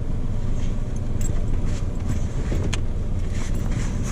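Jeep engine running steadily at low revs, heard as a low rumble. One sharp click about two-thirds of the way through.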